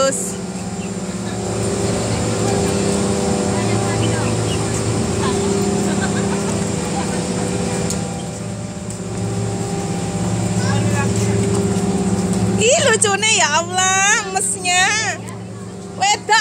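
Steady low hum of building plant equipment behind louvered metal vents, with a few voices calling out near the end.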